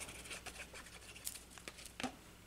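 Faint scratchy dabbing and small ticks from a liquid glue bottle's tip on the back of a cardstock panel, with light rustling of paper being handled.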